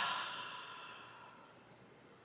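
A woman's long audible exhale through the mouth, a breathy sigh that fades away over about a second and a half, letting go of a deep, full breath.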